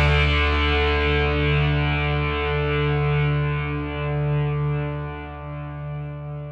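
A distorted electric guitar chord left ringing and slowly fading at the end of a rock song, with a low bass note held beneath it.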